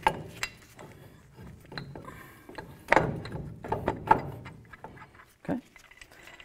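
Wheel bearing and hub assembly being slid over the axle shaft splines and seated into the steering knuckle: irregular metallic clinks and scrapes with a few sharp knocks, the loudest about three and four seconds in.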